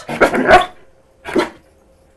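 Belgian Malinois barking on command: a quick run of barks in the first half-second, then a single bark about a second and a half in.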